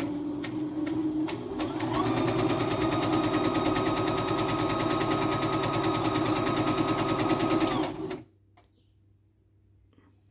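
CNY E960 computerized sewing and embroidery machine running in sewing mode, stitching a straight seam with a rapid, even needle rhythm. It speeds up about two seconds in and stops abruptly about eight seconds in.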